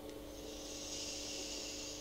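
Steady breathy hiss of a puff on an Innokin Jem mouth-to-lung e-cigarette, lasting nearly two seconds.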